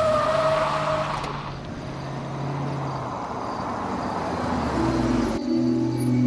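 A car drives up, its engine and tyre noise building until it cuts off abruptly a little after five seconds in. A steady tone sounds over it in the first second.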